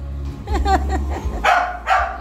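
A house dog barking: a few short barks, the loudest two close together near the end.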